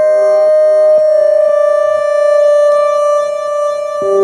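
A vintage Japanese synthesizer holding one long electronic note, played through a Behringer DD400 digital delay pedal. A fainter lower note fades away behind it about three seconds in.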